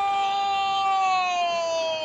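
A Spanish-language TV football commentator's long, drawn-out goal cry, one held shouted vowel of "golazo". It stays steady at a high pitch and sags slightly just before it breaks off.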